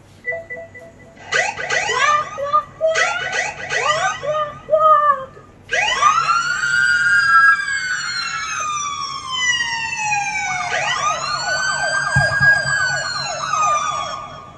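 Siren-like wailing. A few seconds of quick up-and-down warbles give way to a long sweep that rises and then slides slowly down, and a second sweep near the end rises, holds and falls again.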